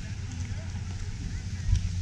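Steady low rumble with faint, indistinct voices of people in the background.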